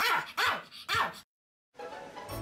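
Pomeranian barking three times, about half a second apart, then cut off abruptly.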